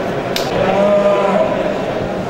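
A Limousin heifer mooing once, a single call of about a second in the middle, preceded by a sharp click.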